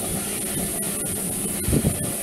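Background music at a steady, moderate level under a constant hiss.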